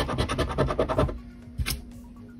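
A coin scraping the coating off a scratch-off lottery ticket in rapid back-and-forth strokes for about a second, then one short scrape near the end.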